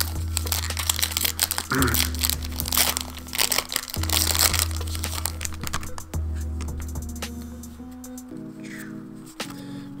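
Foil Yu-Gi-Oh! booster pack wrapper crinkling and crackling as it is torn open and the cards slid out, the crackle thinning out after about six seconds. Background music with low bass notes changing every couple of seconds plays throughout.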